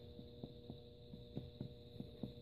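Faint, quick finger-on-finger percussion taps on a bare abdomen, about four light taps a second, over a steady electrical hum. The taps are part of a general percussion survey of the belly, whose notes the examiner judges mostly resonant with nothing abnormal.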